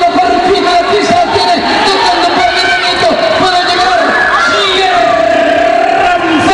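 Spectators at an indoor soccer match shouting and cheering, many voices overlapping at once and held at a steady, loud level.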